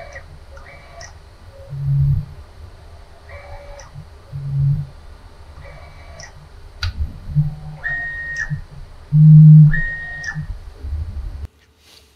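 Tormach 440 mill's X-axis drive motor whining through a series of short jog moves as the table is run back and forth with the hand wheel, pitch and level changing with the speed of each move; the loudest move comes about nine to ten seconds in.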